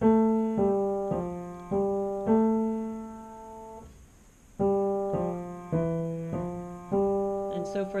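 Piano played with one hand: two groups of five separate notes at about two notes a second, the last note of each group held, with a brief pause between the groups. It is a beginner's stepping-pattern thumb exercise, played with the left hand.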